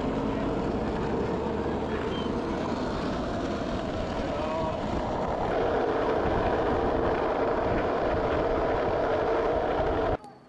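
Steady rush of wind and road noise on the microphone of a camera carried along on a moving bicycle.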